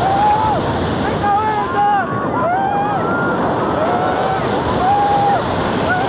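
Roller coaster ride from a front seat: a steady loud rush of wind and train noise, with several riders yelling over it in short, overlapping rising-and-falling cries throughout.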